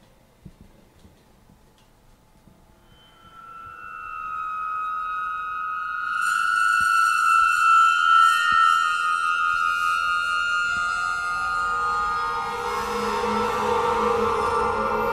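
Chordeograph, a field of over 30 piano strings set vibrating by a bar pressed and drawn across them, sounding long sustained tones. After a few faint knocks, a high ringing tone swells in about three seconds in, and lower tones join near the end, thickening into a dense chord.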